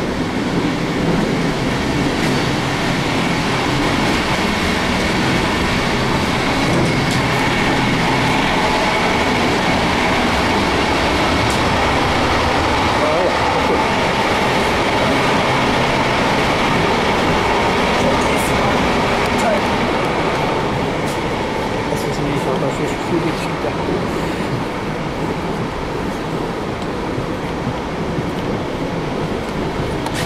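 Cabin noise of an n-Wagen passenger coach under way: the steady rumble and rolling of wheels on the track, with a faint steady whine. It gets slightly quieter in the last few seconds.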